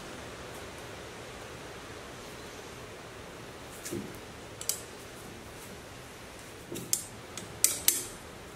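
A wrench working a bolt makes a few sharp metallic clicks and clinks, with a soft thump or two, over a steady hiss. The clicks come in the second half and are loudest near the end.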